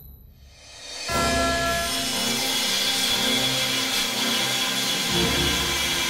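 Angle grinders with thin abrasive cut-off discs cutting aluminium sheet. The grinding sets in suddenly about a second in and runs steadily with a high-pitched whine, over background music with a beat.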